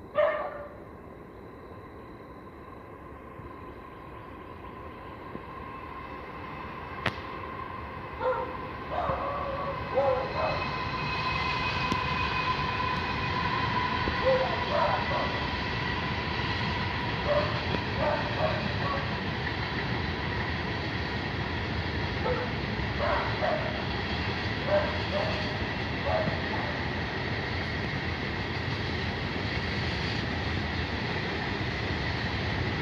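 Cars of a CSX freight train rolling past on the rails, a steady rumble that builds over the first several seconds and then holds, with a steady high tone riding over it. A dog barks several times along the way.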